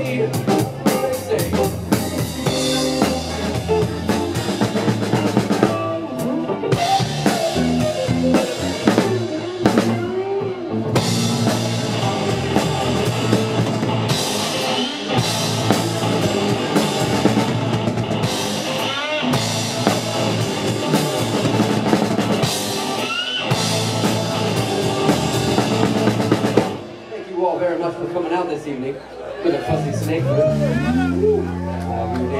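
Live rock band playing with a drum kit, electric guitars and keyboard, the drums prominent. The song winds down about 27 seconds in, leaving a quieter, thinner sound to the end.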